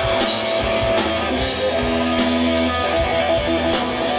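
Live rock band playing: electric guitar with held notes over bass and drums, with no vocals.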